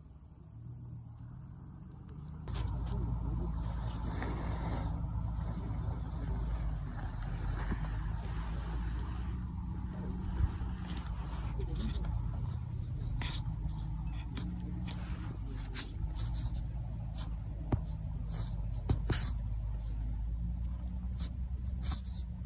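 Steady low vehicle rumble that comes in suddenly about two and a half seconds in, with a few scattered clicks and knocks.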